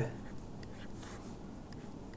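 Faint, scattered taps and scratches of a stylus writing on a tablet screen, over low steady room noise.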